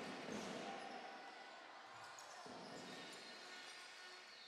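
A basketball being dribbled and bounced on a hardwood court, heard faintly over the murmur of a crowd in a sports hall.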